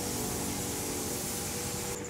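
Steady, even hiss of workshop noise in a leather tannery, with faint music underneath; the hiss cuts off abruptly at the end.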